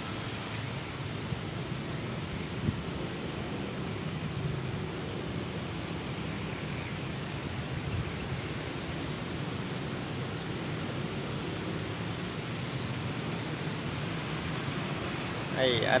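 Steady outdoor background noise: an even hiss over a low rumble, with one faint click a little under three seconds in.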